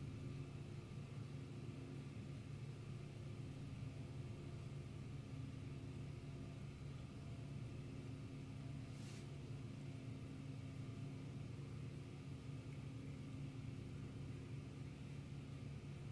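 Quiet room tone: a steady low hum with a faint hiss, and one brief faint tick about nine seconds in.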